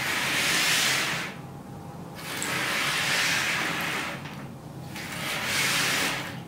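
Cardboard jigsaw puzzle pieces swept and spread across a tabletop by hand, a rustling clatter in three swells with short pauses between them.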